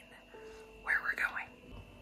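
A woman's voice, soft and breathy, in one short utterance of under a second about a second in. Otherwise only quiet room sound with a faint steady hum.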